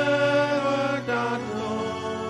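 Hymn sung in a church by voices in long held notes, moving to a new note about a second in.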